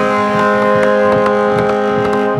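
Arena goal horn sounding a loud, steady chord of held tones, signalling a goal just scored.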